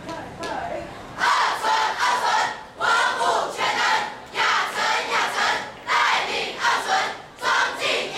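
A large group of students shouting in unison: a rhythmic chant of short, loud cries, about one to two a second, starting about a second in.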